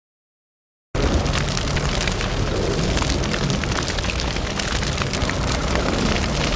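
A large fire burning: dense crackling and hissing over a low rumble, starting abruptly about a second in after dead silence.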